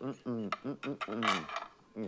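Light clinks of a plate and cutlery under a voice murmuring or speaking indistinctly.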